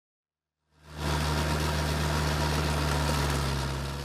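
A construction machine's engine idling with a steady low hum, fading in about a second in.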